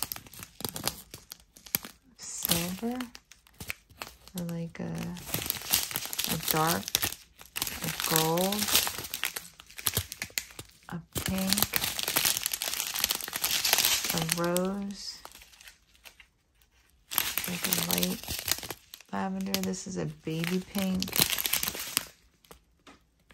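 Clear plastic zip-lock bags of diamond-painting rhinestones crinkling and rustling as they are handled and turned over, with a brief lull about two-thirds of the way in.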